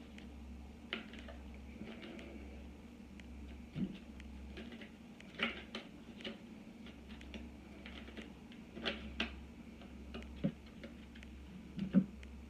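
Tarot cards being shuffled and handled: scattered light clicks and flicks of card stock at irregular intervals, with a louder knock near the end, over a low steady hum.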